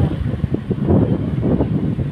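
Wind buffeting the phone's microphone, a loud, uneven low rumble.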